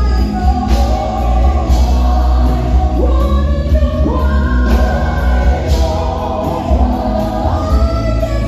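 Live gospel music: a woman singing lead with pitch glides and held notes, backed by harmonising backing singers and a band with drums and heavy bass.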